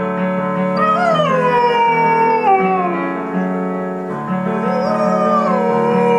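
Dog howling along to a piano ballad: two long howls, each rising and then sliding down in pitch, over steady piano chords.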